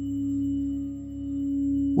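Meditative background music: a single held tone over a low hum, swelling and fading slowly with a dip about halfway through.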